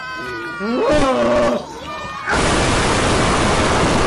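A voice cries out with a gliding pitch, then about two seconds in a loud, harsh rushing noise starts and keeps going: the goblin puppet's comic vomiting sound effect.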